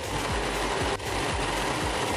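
Serger (overlock machine) running steadily at speed, stitching a seam through layers of shirt fabric, with a brief break about halfway through.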